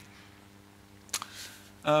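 Quiet room tone with a faint steady low hum, broken by a single sharp click about a second in. A man's voice begins with an 'um' near the end.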